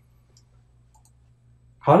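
Two faint short clicks, about a third of a second and a second in, over a low steady hum during a pause in speech.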